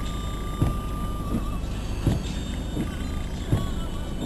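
Car windscreen wipers heard from inside the cabin, a thump at each sweep about every second and a half, over a steady hiss of rain and road noise.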